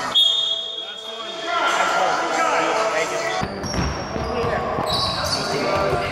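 Sounds of an indoor basketball game on a hardwood gym floor: the ball bouncing, players' voices and a few high-pitched steady squeaks, one of them lasting about a second just after the start.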